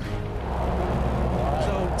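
A heavy machine's engine running with a steady low rumble that firms up shortly after the start.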